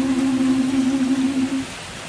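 A small a cappella choir holding the final low note of a song, which stops about a second and a half in.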